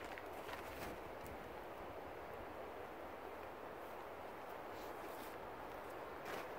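Faint rustling of a plastic tarp being folded over and footsteps on the forest floor: a few soft crinkles against a steady background hiss.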